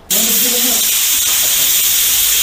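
Pressure cooker whistle: the weight valve on the lid lifts and vents steam in a loud, steady hiss that starts suddenly. It is the sign that the cooker has come up to pressure.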